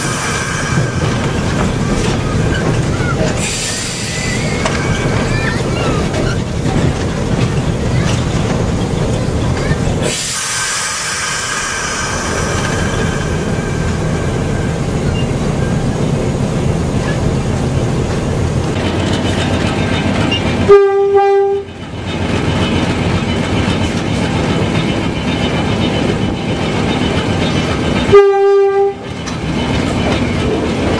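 GE U15C diesel-electric locomotive running under power, its engine and the wheels on the jointed rails making a steady din. Near the end its horn gives two short blasts about seven seconds apart, the loudest sounds here.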